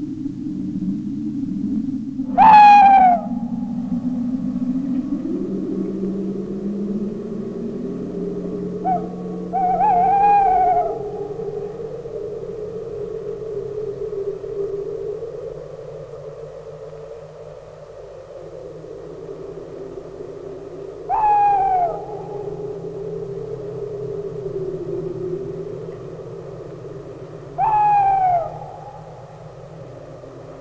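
Abstract 1970s electronic music: a low drone that slowly wanders up and down in pitch, crossed by short, loud cries that swoop downward. One comes a few seconds in, a longer double cry around ten seconds, one about two-thirds through and one near the end.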